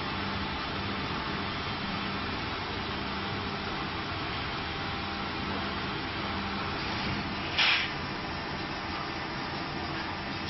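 Injection moulding machine running a preform mould, a steady mechanical hum with a low tone that comes and goes. About three-quarters of the way through there is a short, louder hiss.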